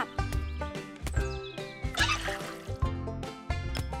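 Cheerful cartoon background music with a steady bass beat, with a thin falling whistle-like sound effect about a second in.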